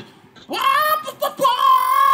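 A person's voice making a high-pitched, long held, slightly wavering falsetto sound that starts about half a second in.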